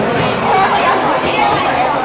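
Indistinct crowd chatter: many teenagers talking over one another at once, at a steady level.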